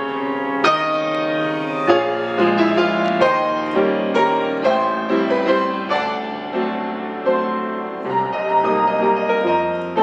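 Solo grand piano playing a waltz: a melody of single struck notes over held chords.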